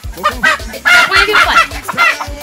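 Chickens clucking, several loud calls in quick succession that bend up and down in pitch.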